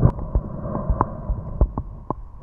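Underwater ambience heard through a submerged camera: a muffled low rumble, with a few faint sharp ticks scattered through it.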